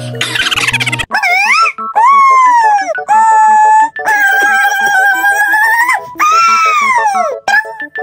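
About a second of music, then a high-pitched voice wailing in a series of long held notes that bend up and down, with short breaks between them.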